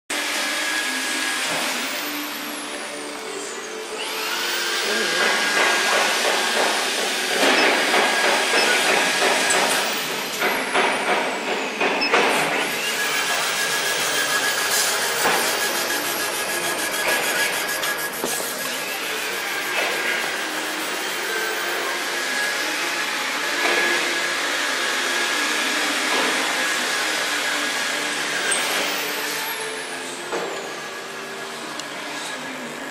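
AKJ6090 CO2 laser engraving and cutting machine cutting acrylic: a steady rush of blowing air, with whining glides in pitch, some rising and some falling, as the laser head moves.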